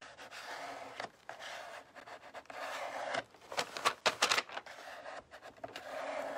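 A plastic card is pressed and drawn over glued decoupage paper on a painted wooden board in a run of rubbing strokes, with a few sharper scrapes in the middle. This is the paper being smoothed flat to push out bubbles and wrinkles.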